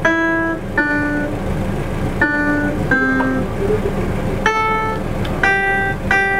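Single notes from a laptop piano program, triggered one at a time as bananas wired to a Makey Makey board are touched. About six short notes rise and fall in pitch with small pauses between them, picking out a simple tune.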